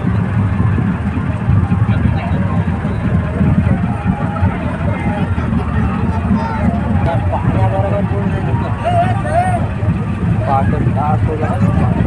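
Steady low drone of a boat's engine running throughout, with indistinct voices talking and calling over it, clearest in the second half.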